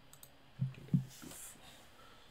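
A few light clicks, then two short, low thumps about a third of a second apart, the second the loudest, followed by a brief hiss.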